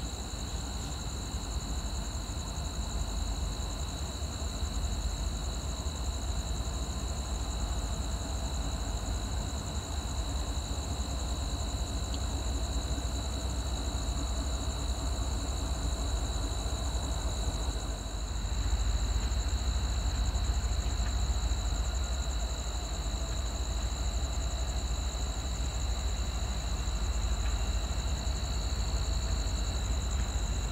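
Low rumble of Norfolk Southern train 296's approaching diesel locomotives, an AC44C6M and an SD70ACe, not yet in sight; it grows louder about eighteen seconds in. Night insects chirp steadily over it.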